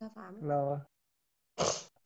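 A woman's voice saying a few words that trail off low in pitch, then a short breathy sound about three-quarters of the way in.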